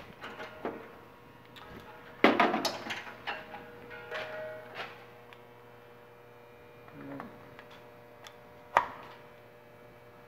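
Handling noise from a welder's heavy power cable being carried and plugged into a wall receptacle. A loud clatter comes about two seconds in, then scattered small knocks and one sharp click near the end, over a faint steady hum.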